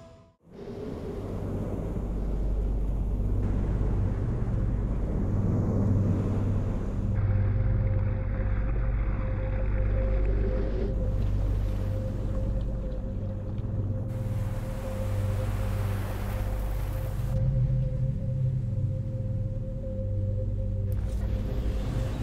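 A low, steady rumbling drone with a faint wash of noise above it. A single held tone joins about seven seconds in, and the sound changes abruptly at several edits.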